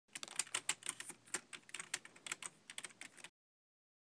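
Computer keyboard typing: a quick, irregular run of key clicks that stops about three seconds in.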